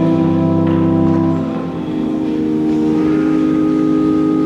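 Church organ playing slow, sustained chords, the low notes dropping out about one and a half seconds in as the chord changes.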